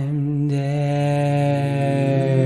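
A singing voice holding one long note on the drawn-out word 'dead', wavering slightly at first and then held steady.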